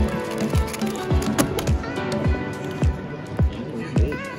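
Background music with a steady kick-drum beat, a little under two beats a second, under sustained melody notes.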